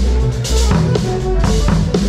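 Live funk band playing, with the drum kit loudest: a steady kick-and-snare beat over bass and held chords.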